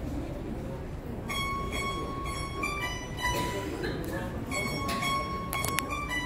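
Quiet sustained high notes from a single instrument, each held and then stepping to a new pitch a few times, over a low murmur of audience chatter, with a few sharp clicks near the end.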